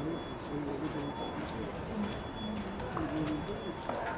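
Indistinct background talking of people, with a few faint clicks.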